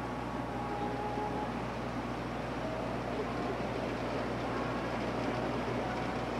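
Steady background hiss with a low hum, with no distinct event, and a couple of faint brief tones in the first half.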